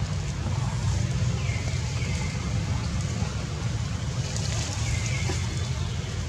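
Outdoor background noise: a steady low rumble, with three faint, short high calls that fall in pitch.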